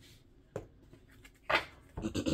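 Handling sounds of a paperback card-deck guidebook being laid on a tabletop: a faint tap about half a second in, then a louder short brush or tap about a second and a half in.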